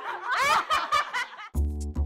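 Women laughing. About one and a half seconds in, the laughter cuts off and music with a steady, repeating bass beat begins.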